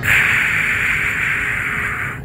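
A person imitating a cheering crowd with a long, breathy hiss from the mouth. It starts suddenly, holds steady for about two seconds, then cuts off, over the low rumble of the car on the road.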